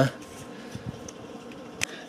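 Quiet, steady room hum with faint hiss, and a single sharp click near the end.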